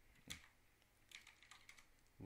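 Faint typing on a computer keyboard: a handful of scattered keystrokes.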